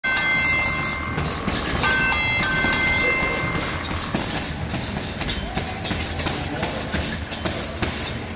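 Boxing gloves striking a hanging heavy bag in a string of sharp hits, about two or three a second at an uneven pace, thickest in the second half. Music with held high notes plays under the hits in the first half.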